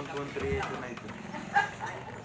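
A dog barking, with voices around it.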